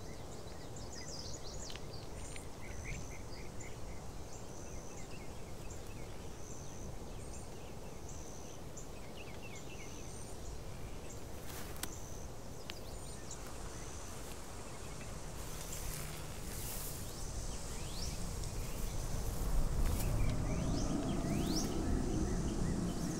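Grassy field ambience: an insect chirping in an even, repeating high pulse, with scattered bird chirps. A low rumble swells in the last few seconds.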